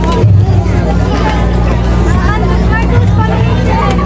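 Many voices of children and adults talking over one another in a hall, with a steady low hum underneath.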